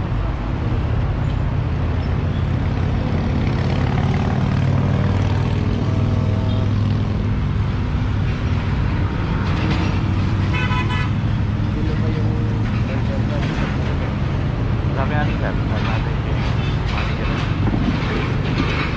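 Steady low rumble of road traffic, with a vehicle horn tooting briefly about ten seconds in.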